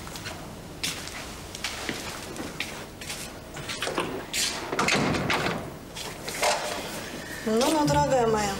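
An office door opening and then shutting, with a thud about five seconds in, among small handling clicks.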